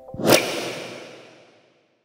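A whoosh sound effect for a logo end card: a sudden swell about a third of a second in, then a long tail that fades away over about a second and a half.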